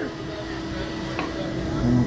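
Steady mechanical hum from the slingshot ride's machinery with the seat held before launch, and one faint click about a second in.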